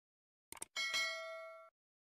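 Subscribe-button animation sound effect: a couple of quick clicks, then a bright notification-bell ding that rings for about a second and cuts off.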